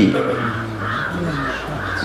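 Crows cawing several times in the background during a pause in speech.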